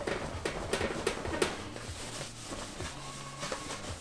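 Microfiber cloth rubbing wax off a painted rocket nose cone: a quick series of short wiping strokes, strongest in the first second and a half, then fainter.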